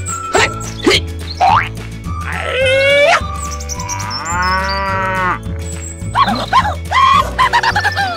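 A cow mooing, one long call about midway, over a background music track with a steady bass beat. Short sliding, whistle-like sound effects come near the start.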